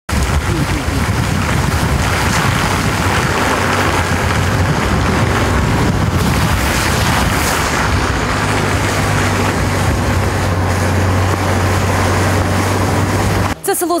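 Loud steady rushing outdoor noise with wind on the microphone over flooded fields; a low steady hum joins it about eight seconds in. It cuts off near the end as a voice begins.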